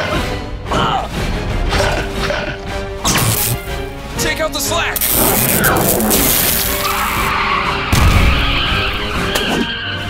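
Dramatic cartoon action score with sound effects layered over it: sudden crash-like hits, a stretch of noisy rushing in the middle, and a heavy low boom about eight seconds in.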